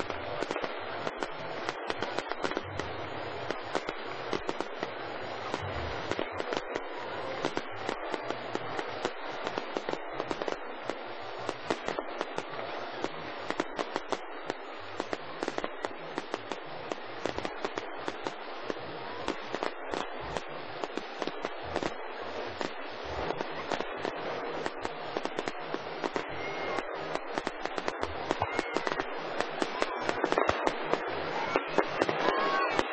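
A fireworks display: a dense, continuous crackling of many small bursts all through, with a few low thumps in among them.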